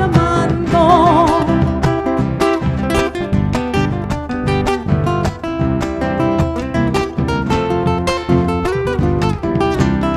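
Argentine folk instrumental passage: a nylon-string acoustic guitar picks the lead over a second guitar and a bombo drum keeping a steady beat.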